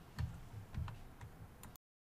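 A few faint clicks and soft low bumps, then the sound cuts off suddenly to dead silence a little before the end.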